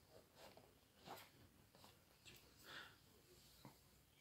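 Near silence, with a few faint light taps and rustles of a cardboard box being handled and slid across a table.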